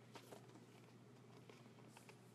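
Near silence: faint room tone with a few soft ticks and rustles from a cardboard box being opened by hand.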